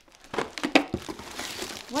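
Plastic packaging crinkling and rustling as it is handled and pulled out of a box, with a quick run of sharp crackles in the first second and lighter rustling after.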